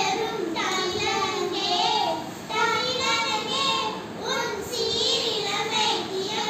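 Children singing a prayer song together, with held, gliding notes in a steady melodic line.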